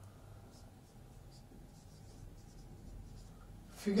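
Marker pen writing on a whiteboard: a series of faint, short strokes as a word is written.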